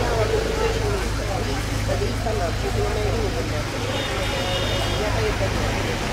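Open-air market ambience: people's voices talking in the background over a steady low rumble of traffic.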